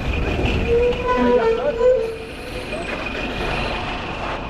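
Bus passing close by: a steady low engine rumble with a constant high whine over it.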